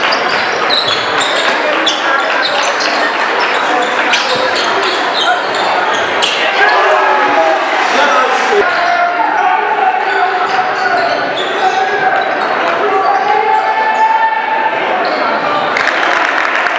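Basketball being dribbled on a hardwood gym floor, with voices of players and spectators echoing in a large gym.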